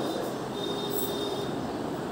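Steady background noise with a faint hum running under it, with no speech.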